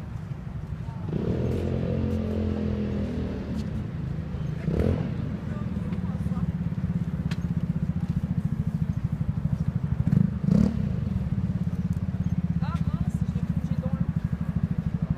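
An engine idling close by, a steady low pulsing sound, with people's voices rising over it now and then.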